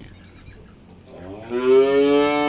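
A cow mooing: one long moo that starts about a second and a half in, rising slightly in pitch at its onset and then holding steady.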